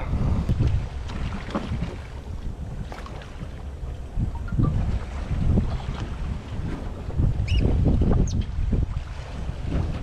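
Wind buffeting the microphone on an open boat at sea, coming in uneven low gusts, with sea water lapping against the hull.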